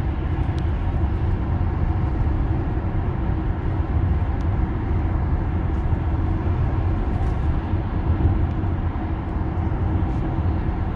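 Steady road and tyre noise heard inside the cabin of a Tesla electric car cruising at highway speed, a low even rumble with no engine sound.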